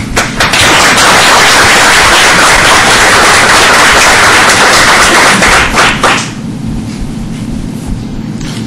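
Audience applauding, a dense, loud clatter of clapping that lasts about six seconds and then stops.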